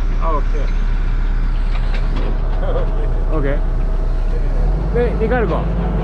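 Hydraulic excavator's diesel engine running steadily, heard from inside the operator's cab; about four and a half seconds in its note steps up and grows louder as the machine is put to work from the controls.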